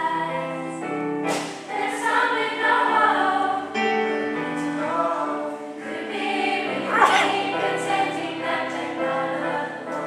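Mixed-voice youth choir in soprano, alto and baritone parts singing in harmony, holding sustained chords, with a brief sharp hiss about seven seconds in.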